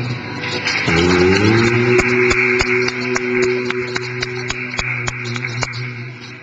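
Background music: a long held note that slides up into pitch about a second in and fades near the end, over evenly spaced clicks about three a second.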